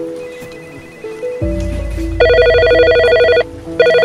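Soft background music with slow single notes, then a telephone ringing with an electronic trill: one ring of just over a second about halfway in, and a second ring starting near the end. A low bass note sits under the rings.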